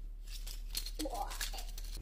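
Faint plastic clicks and rattles from a small Megatron Transformers toy being handled, with a short faint sound about a second in.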